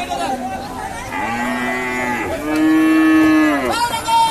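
Cows mooing: two long calls, the second louder and dropping in pitch as it ends, with another moo starting right at the end.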